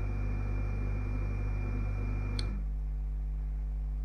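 Room tone of the recording: a steady low electrical hum under a hiss and a thin high whine. About two and a half seconds in, a faint click; the hiss and whine then drop away and the hum carries on.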